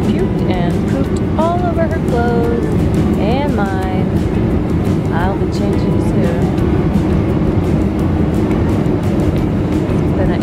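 Steady low drone of a jet airliner's cabin in flight, with a voice and music over it in the first half.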